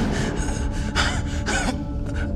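A person gasping in distress, several sharp breaths about half a second apart, over a quiet dramatic music bed.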